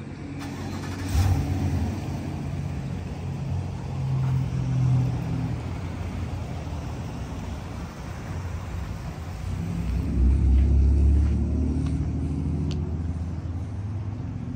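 A car engine's low rumble running steadily, swelling louder a few times, most strongly near the end.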